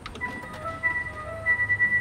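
Coin-operated digital weighing scale playing its tinny electronic jingle as it weighs: a simple beeping tune over a held high note.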